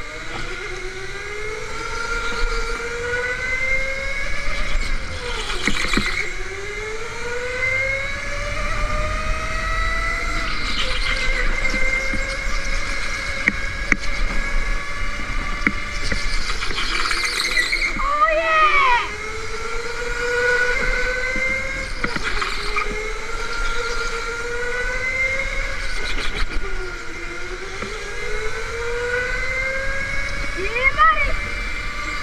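Indoor electric go-kart motor whining. Its pitch rises steadily as the kart accelerates along each straight and drops sharply when it slows for the corners, repeating several times.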